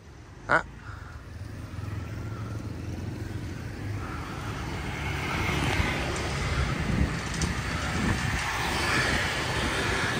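Motor scooter traffic on a city street, growing steadily louder as scooters approach, with a short click about half a second in.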